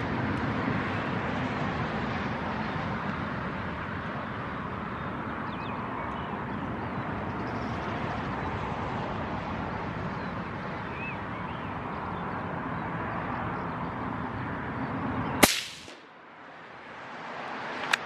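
A single rifle shot from a CZ527 in .17 Hornet, one sharp crack near the end, over a steady rushing background noise.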